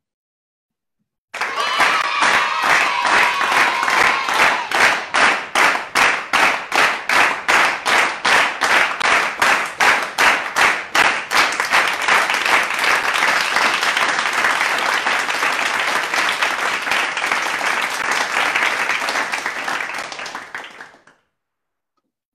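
Crowd applause, starting abruptly: rhythmic clapping at about three claps a second, merging after about ten seconds into continuous applause that fades and cuts off near the end.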